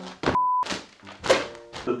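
A soft thunk as a bagged mattress topper lands on a mattress, over background music with a steady beat. A short beep sounds just after the first stroke.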